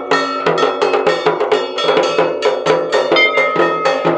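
Dhak drums beaten in a fast, even rhythm, about four strokes a second, with a kansor (small bell-metal gong) struck along with them, ringing after each stroke.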